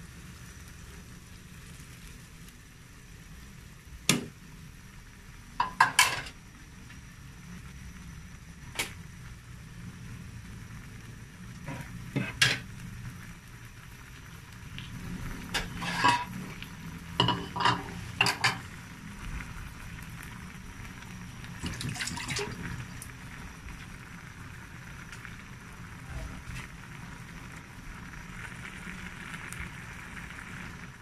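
Coconut milk poured into a pan of winged beans and squash, then simmering and bubbling over a steady low hiss. Sharp clinks and clatters of a bowl or utensil against the metal pan come several times, most thickly in the middle.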